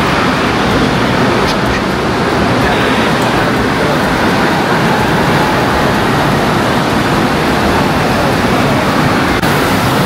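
Steady, loud din of a large indoor water park: rushing water from slides and water features mixed with the indistinct chatter of many people.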